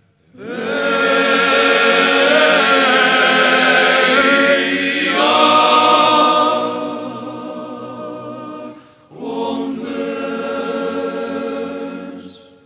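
Male vocal ensemble singing unaccompanied in the Zakynthian polyphonic church-song style (arekia). One long held chord shifts to a new chord about halfway and fades, then after a brief pause for breath a second chord is held.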